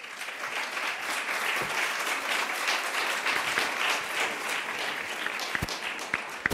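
Audience applauding, starting suddenly and thinning to a few separate claps near the end.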